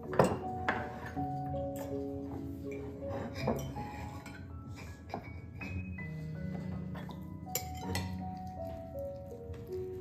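Table knives and forks clinking and scraping against ceramic plates as pancakes are cut, several separate strikes with the loudest just after the start, over light background music.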